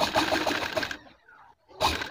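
Sewing machine stitching in short runs: one run of fast, even stitches stops about a second in, and a second brief run starts near the end. It is sewing a fabric strip closed over a cord to make piping.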